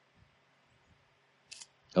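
Near silence in a gap between speech, broken about one and a half seconds in by a brief high hiss, with a man starting to speak right at the end.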